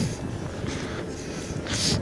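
Wind noise on the microphone outdoors: a steady low rumbling hiss, with a brief louder hiss near the end.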